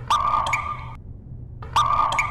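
Two identical buzzing electronic tones, each just under a second long, the second starting about a second and a half after the first, over a low steady hum.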